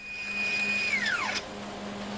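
Stepper motor driving the satellite's wire-boom belt mechanism on a test rig: a steady high whine that falls in pitch about a second in as the motor slows, over a steady low hum.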